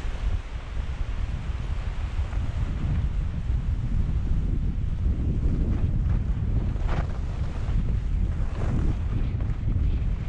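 Wind rumbling on the microphone of a skier moving downhill, with the hiss of skis sliding on snow and a brief sharper rasp about seven seconds in.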